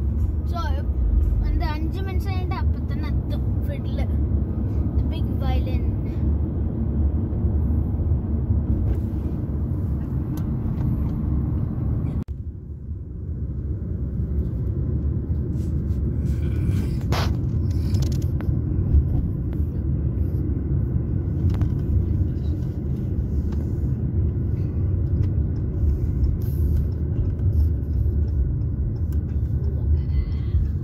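Car road and engine noise heard inside the cabin while driving: a steady low rumble, briefly broken by a cut about twelve seconds in. A short tone sounds about seventeen seconds in.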